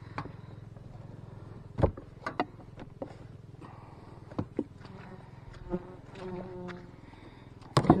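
Italian honey bees buzzing in a steady low hum at the open hive, with a few sharp wooden knocks as the hive's top cover is set back down, the loudest about two seconds in.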